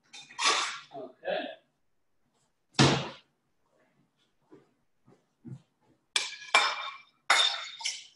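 Ceramic dinner plates clattering and clinking as they are handled and set down on a stone countertop: one sharp knock about three seconds in, then a run of ringing clinks near the end.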